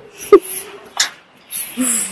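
A woman's breathy laughter and exhalations, with a couple of sharp clicks.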